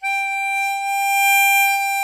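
A harmonica playing one long note held at a steady, unwavering pitch for about two seconds.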